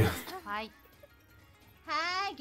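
A man's short laugh at the start, then near the end a high, wavering cartoon voice begins a drawn-out, rising 'Hää'.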